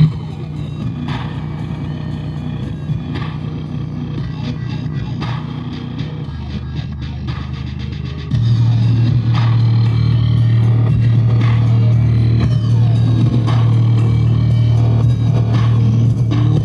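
Sony coaxial car speaker driven hard with a deep bass signal at large cone excursion, giving a steady low drone. It steps up noticeably louder about eight seconds in.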